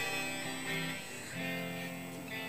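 Soft guitar music playing quietly, a few held notes changing every half second or so.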